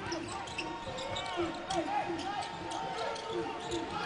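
Basketball being dribbled on a hardwood court during live play, repeated short bounces under the general sound of the arena, with scattered players' and crowd voices.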